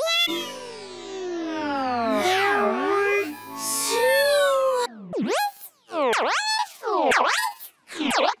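Electronically warped, pitch-bent tones: a stack of tones slides steeply down for about two seconds, tangles into crossing glides, then after a short drop-out gives four separate swoops that dip and rise again, each under a second, with short gaps between.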